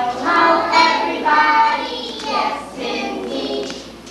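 Young children singing a song together, with long held notes at first and shorter phrases after.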